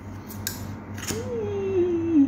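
A few sharp clicks from a plastic lip gloss tube and cap being handled. Just over a second in, a closed-mouth 'mm' hum starts and slides slowly down in pitch.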